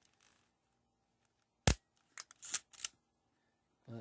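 Hard plastic clicks from a 3D-printed K battery being pressed into a Kodak Pocket Instamatic 60's battery compartment: one sharp click, then a quick cluster of smaller clicks and scrapes. The battery is slightly too big and won't seat fully against the electrodes.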